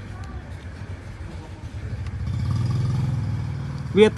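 A low engine rumble that swells from about two seconds in and eases off near the end.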